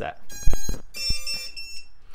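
A racing quadcopter's ESCs playing their electronic startup beeps through the motors as its battery is plugged in, in two short groups of tones. A sharp knock about half a second in, as the connector is pushed home.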